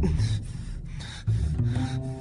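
Quick, heavy breathing, about two to three breaths a second, over low background music.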